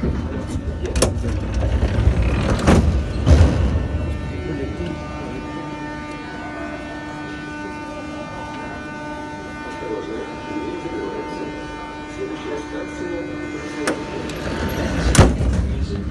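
Metro train coming to a halt at a station: rumble and a few clunks in the first few seconds. It then stands with a steady multi-tone hum from its onboard equipment, and there is a sharp knock near the end.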